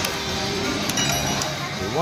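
Video slot machine playing its electronic game tones as a small win pays out and the reels spin again, over the hubbub of a casino floor, with a couple of short clicks about a second in.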